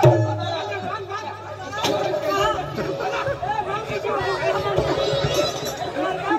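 Several men talking and calling out over one another, with a few low thumps among the voices.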